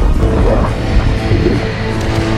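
Film score with sustained tones, over which a giant movie monster, King Ghidorah, gives a few short growling calls in the first half.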